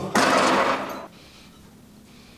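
A man's forceful, breathy exhale of effort during a cable rope triceps rep, lasting about a second.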